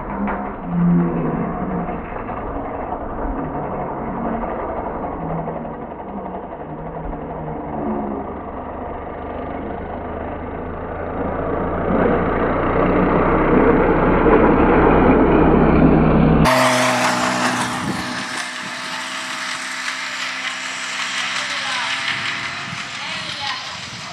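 Racing whippets' mechanical lure running along its line, a steady whirring rumble that grows loudest as the lure passes close, about twelve to sixteen seconds in. Voices are mixed in throughout. The sound changes abruptly about sixteen seconds in to clearer voices.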